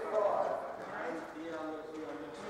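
Indistinct voices talking in the hall, with no ball being hit.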